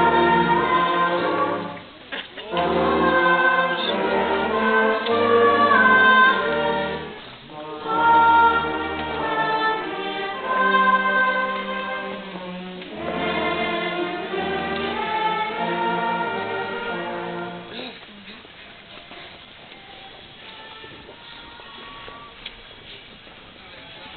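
A choir singing with instrumental accompaniment and a steady bass line, stopping about 18 seconds in and leaving only faint background murmur.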